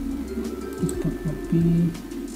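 Low cooing calls of a pigeon or dove: a few short falling notes, then one louder held note near the end.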